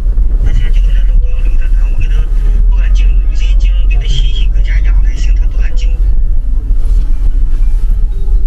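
Low, steady rumble of a car driving slowly, heard from inside the cabin.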